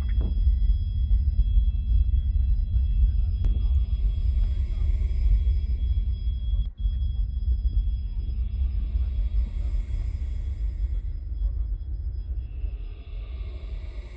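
Ambient electronic soundtrack of a light-projection show played over loudspeakers: a deep low drone with faint steady high tones, and a hissing swell that rises and fades three times, about every five seconds.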